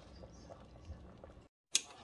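Faint sound of a large pot of soup simmering on the stove: a low steady hum with small scattered ticks of bubbling. Near the end it drops out to silence for a moment and comes back with a sharp click.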